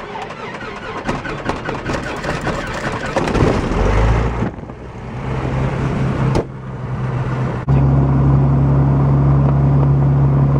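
A light single-engine airplane's piston engine being started: about four seconds of rough starter cranking, then the engine catches and settles into a steady low drone. Near the end the drone steps abruptly louder and steadier.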